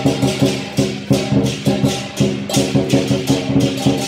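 Lion dance percussion: a drum beating with crashing cymbals and a ringing gong, in a steady rhythm of about three to four strikes a second.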